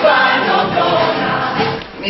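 A stage musical's large cast singing together in chorus over music. The music cuts off just before the end.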